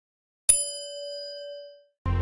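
A single bell ding sound effect for the 'press the bell icon' prompt, struck about half a second in with a clear ringing tone that fades away over about a second and a half.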